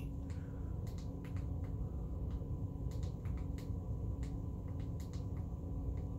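Room tone: a steady low hum with a faint high whine, and a scattered series of faint short clicks.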